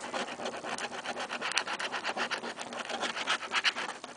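A coin's edge scraping the coating off a paper scratch-off lottery ticket in rapid strokes, several a second.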